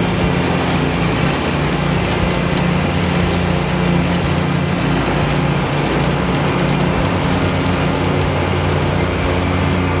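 Wright ZK stand-on zero-turn mower's engine running steadily while the mower cuts field grass.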